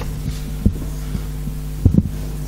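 Steady electrical hum from the sound system, with low thumps of a handheld microphone being handled: one about two-thirds of a second in and two close together near the end.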